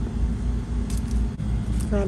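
Steady low background rumble with a constant hum underneath and no distinct event.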